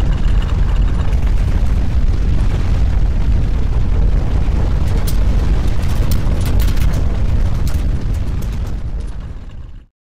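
Deep rumbling noise picked up on a camera microphone, with scattered sharp crackles and clicks over it. It fades in the last second and then cuts off.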